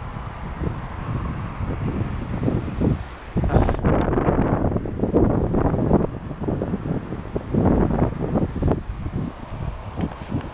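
Wind buffeting the microphone of a handheld camera in uneven gusts, with rustle from the camera being moved about.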